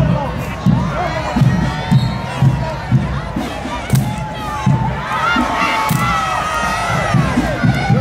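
Parade crowd cheering and shouting, with high voices rising and falling, over a steady low marching-band drum beat of about two beats a second.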